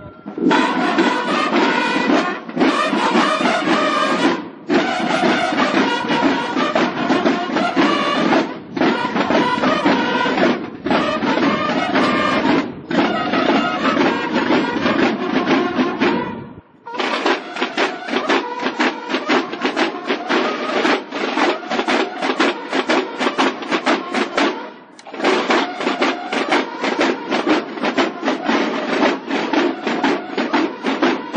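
Mexican banda de guerra of bugles and snare drums playing a march, loud, in phrases broken by short pauses. After a brief break about halfway through, the playing resumes with quicker, lighter drum strokes under the bugles.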